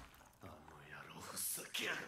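Quiet, partly whispered Japanese dialogue from the anime's soundtrack, growing louder near the end.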